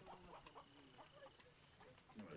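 Near silence: faint background ambience with a few small, scattered chirps and ticks.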